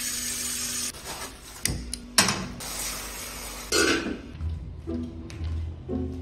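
Tap water running into a metal cooking pot, with a couple of sharp clanks of the pot in the middle, the second the loudest. Background music comes back in the second half.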